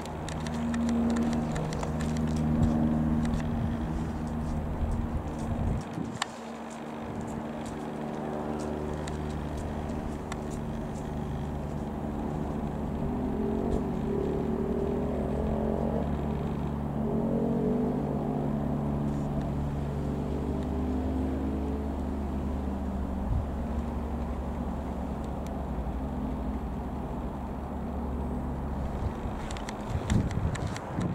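Single-engine Cessna 172M Skyhawk's four-cylinder Lycoming piston engine and propeller droning steadily as the aircraft flies overhead, its tone sweeping around the middle as it passes closest.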